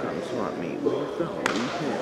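People talking in a gymnasium, with one sharp knock about one and a half seconds in, like a ball or shoe striking the hardwood court.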